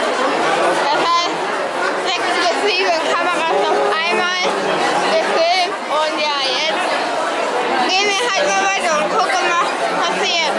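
Many people talking at once: a dense babble of overlapping voices with no single clear speaker.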